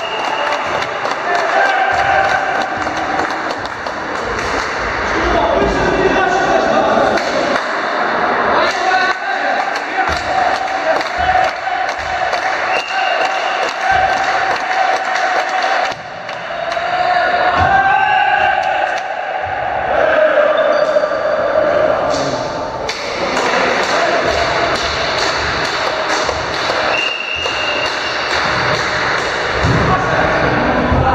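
A volleyball being struck and hitting a gym floor in repeated sharp thuds through rallies, with players' shouts, all echoing in a large sports hall.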